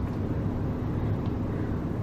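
Steady low hum and rumble of refrigerated drink vending machines running.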